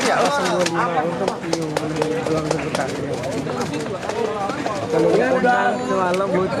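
Men's voices talking in the background, with a few short sharp taps scattered through.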